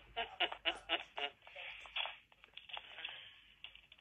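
A woman's voice faintly heard through a phone's speaker on a call, thin and tinny, talking in short broken phrases.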